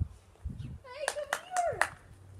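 A person calling a dog, clapping four times about a quarter-second apart over a high-pitched, wavering call.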